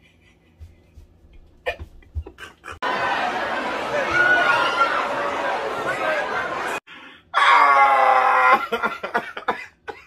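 About four seconds of a crowded nightclub recording, with many voices over a dense din, that stops abruptly. Then a man bursts into loud laughter that falls in pitch and breaks up into short laughs and coughs.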